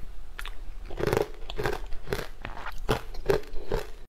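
Ice being crunched and chewed in the mouth, close to the microphone: sharp crunches about twice a second, some louder than others.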